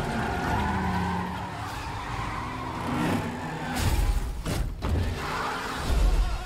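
Action-film trailer soundtrack of car engines revving and tyres skidding as cars drift, with several deep booms in the second half.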